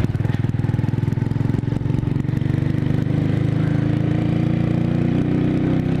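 Motorcycle engine running steadily under way, its note climbing a little through the middle as the bike picks up speed.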